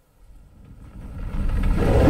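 Opening of a film trailer's soundtrack: a low rumble swells up from near silence, growing steadily louder through the second half, with sustained tones coming in on top near the end.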